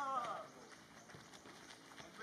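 A shouted voice call trails off in the first half second, then faint outdoor background with a few light taps.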